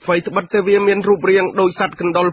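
Speech from a Khmer-language radio news broadcast: a voice talking continuously, with the narrow, thin sound of radio audio.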